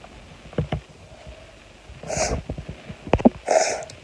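A person's breath close to the microphone: two short breathy puffs, about two seconds and three and a half seconds in, with a few small clicks between.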